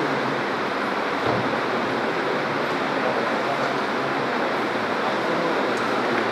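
Steady, even hiss of background noise at a constant level, with no distinct events in it.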